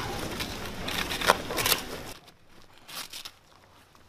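Crinkling and rustling of medical packaging and gear being handled, with a few sharp crackles. It drops suddenly to a faint rustle about two seconds in.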